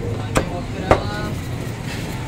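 Two chops of a meat cleaver through raw chicken onto a wooden chopping block, about half a second apart, the second louder and followed by a short ring.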